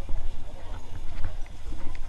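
Footsteps on a paved walkway with a few sharp clicks, under the chatter of people around, and a steady low rumble on the microphone.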